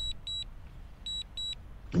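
Short high double beeps from the DJI Fly app, repeating about once a second: the alert it sounds while the drone is on automatic Return to Home. A faint low rumble lies underneath.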